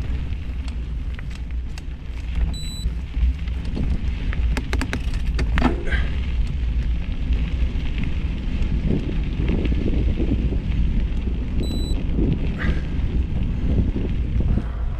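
Wind rumble on the microphone of a camera moving along a dirt forest trail, with rustling and crackling from the ground passing beneath, and a cluster of sharp crackles about four to five seconds in. Two very short high beeps sound about nine seconds apart.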